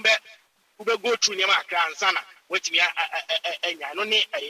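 A man speaking, with a short pause near the start.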